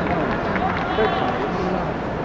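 Live stadium sound of a football match: players' shouts and calls over a steady crowd murmur, with one brief louder peak about halfway through.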